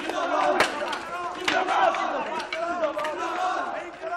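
A crowd of people shouting, many voices overlapping, with a couple of sharp knocks about half a second and a second and a half in.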